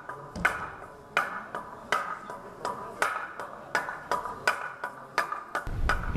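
Wooden semantron (klepalo) beaten with a wooden mallet: sharp, ringing wooden knocks in an uneven rhythm of heavier strokes about every 0.7 s with lighter taps between. It is the Orthodox monastery's call to prayer.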